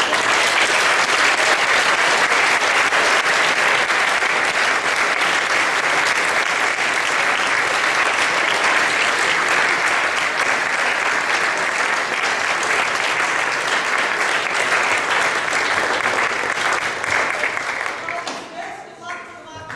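Audience applauding: dense, steady clapping that starts suddenly and dies away near the end.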